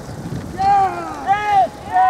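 A woman spectator's high-pitched cheering shouts, two drawn-out yells, the first about half a second in and the second about a second and a half in.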